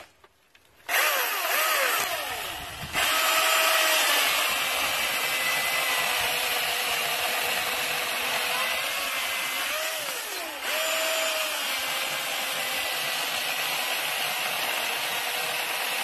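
Milwaukee M18 Fuel 16-inch brushless cordless chainsaw starting up about a second in and cutting through a log, the motor and chain running steadily under load. It eases off briefly about two seconds in and again about ten seconds in.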